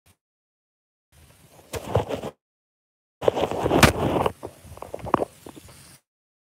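Rubbing and knocking from a phone being handled close to its microphone, with the audio dropping out to dead silence at the start and again for about a second in the middle, as a live stream's connection breaks up.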